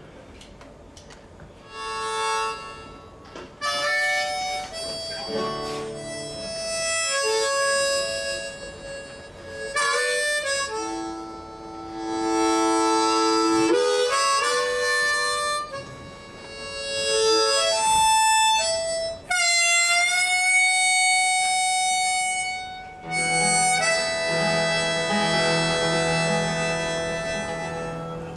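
Harmonica in a neck rack playing a melody in phrases with short breaks, starting about two seconds in, with one note bent upward about two-thirds of the way through.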